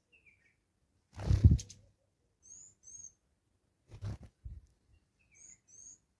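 Blue waxbills giving short, thin, high-pitched calls, several in quick pairs, with a couple of lower down-slurred notes. Two loud, low, muffled thumps come about a second in and again about four seconds in.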